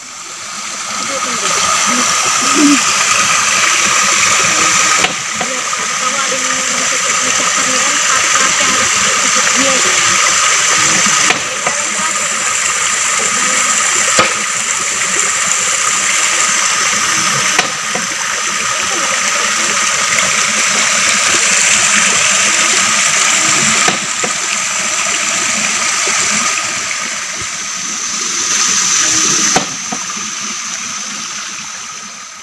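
Running water from a small forest stream, a steady rushing splash with a constant high-pitched drone over it. The sound jumps abruptly several times as one clip gives way to the next.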